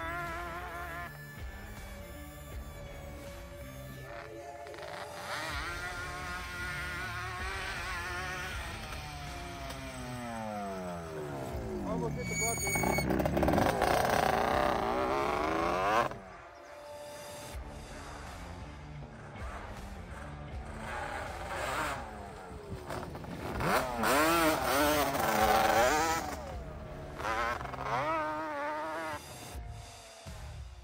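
Yamaha Banshee ATV's two-stroke twin engine revving hard, its pitch rising and falling with the throttle. About twelve seconds in, the pitch drops steeply and climbs again as it passes, the loudest stretch, and the sound cuts off suddenly a few seconds later.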